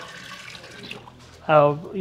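Water poured from a plastic bucket into the tub of a portable washing machine, a soft steady splashing as the tub is filled for a wash. A man's voice cuts in after about a second and a half.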